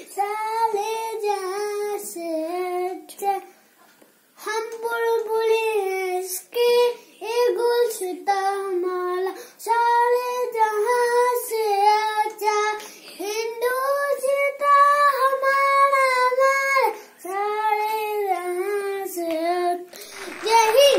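A young boy singing solo with no accompaniment, in long held notes, pausing briefly about four seconds in.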